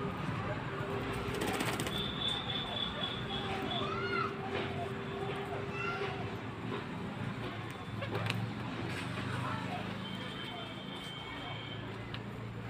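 Pigeons calling in short rising-and-falling notes over a steady background hum.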